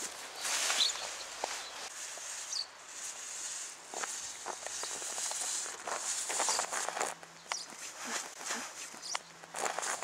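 Crunching and scraping in snow: a long-handled snow shovel pushing snow along a path, with footsteps in the snow, in irregular strokes.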